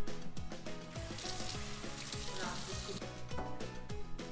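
Upbeat background music with a steady beat; about a second in, water runs from a kitchen tap for about two seconds while hands are washed.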